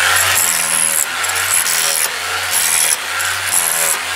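A hand tool chipping and scraping at clay and rock in the floor of a gold-mine tunnel, in repeated strokes about once a second.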